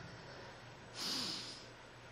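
A woman's single audible breath out, a sigh with a faint falling voice under it, close to a microphone about a second in.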